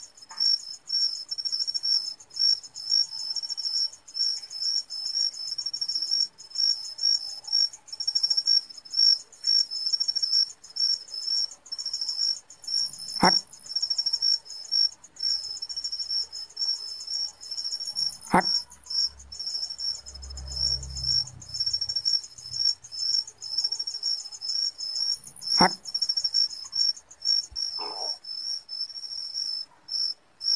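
Crickets chirping steadily in a fast, high pulsing trill, with three sharp clicks spread through the middle and latter part.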